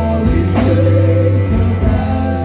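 A rock band playing live through a PA: an electric bass holds low notes under a sung vocal, with the chord changing about half a second in and again near the end.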